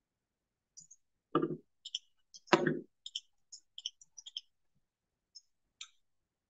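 Two short knocks about a second apart, then a run of light, quick clicks that thin out near the end, heard through a video call's audio.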